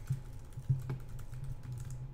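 Typing on a computer keyboard: irregular light key clicks, with a couple of louder taps near the middle, over a steady low hum.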